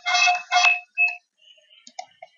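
Electronic ringtone-like melody of repeated chiming notes, about two or three a second, that stops a little over a second in, followed by a few faint clicks.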